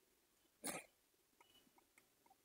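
Near silence with a few faint small clicks, broken about two-thirds of a second in by one short noisy burst, like a quick puff of breath.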